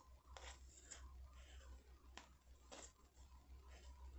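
Near silence, with a few faint, brief scrapes as yarn is wound around a cardboard half-moon form, the strand rubbing over the cardboard and the wrapped layers.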